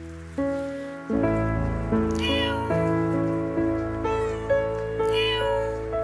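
A stray cat meowing three times, the middle call fainter, over background music of sustained notes.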